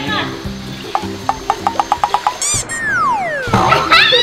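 Background music with added cartoon sound effects: a quick run of about eight ticks, then, a little past the middle, a falling whistle tone that slides down steadily for under a second.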